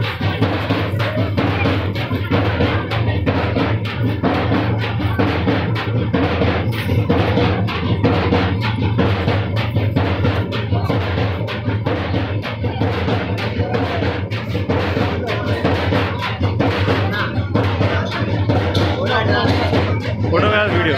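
Loud drum-led music with fast, continuous drumbeats, with voices mixed in.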